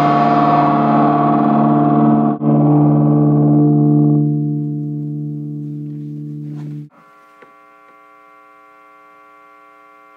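Electric guitar chord through a Peavey Century amp head, ringing out with sustain. It is struck again about two seconds in, fades, and is cut off abruptly about seven seconds in. That leaves a steady, quieter hum from the amp.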